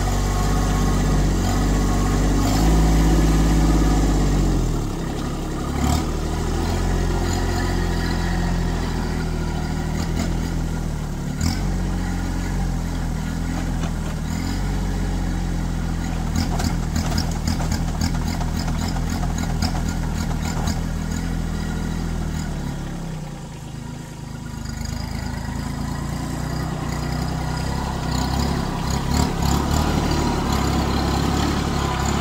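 Kubota compact tractor's diesel engine running steadily under varying load. Its pitch drops about four seconds in, a rapid clatter rides over it through the middle, and the level dips briefly a few seconds before the end.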